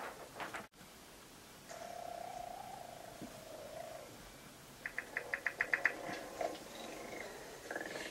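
Dinosaur-like creature calls dubbed onto the scene: a drawn-out moaning call, then a fast rattling trill of about eight pulses a second, followed by fainter calls.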